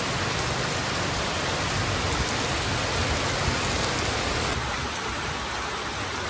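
Heavy rain falling steadily on a wet road, a dense, even hiss that shifts slightly in tone about four and a half seconds in.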